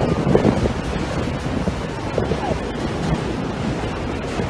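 Wind buffeting the microphone on the open top deck of a moving tour bus, a steady rushing roar over the rumble of the bus and traffic.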